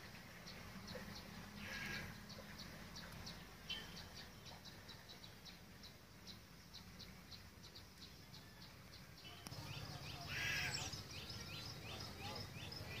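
Faint outdoor ambience of birds: a steady series of short high chirps, about three a second, joined near the end by a quick run of descending chirps.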